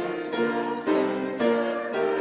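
A hymn sung by a group of voices with keyboard accompaniment, its held notes changing about every half second.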